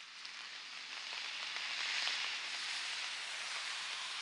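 Steady rain falling, a soft, even hiss that grows a little louder over the first two seconds.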